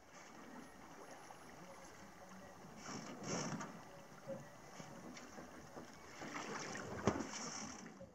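Water swishing faintly along the hull of a sailing yacht moving slowly in light wind, with a louder swish about three seconds in and again near the end.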